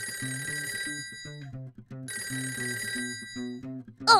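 A telephone ringing twice, each ring lasting about a second and a half, over children's music with a plucked bass line.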